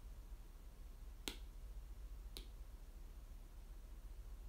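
Two short, sharp clicks about a second apart, the first louder, over a faint steady low hum.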